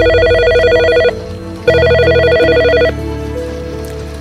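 An incoming call on a telephone, which rings twice with an electronic trilling ring. Each ring lasts about a second, and there is a short pause between them.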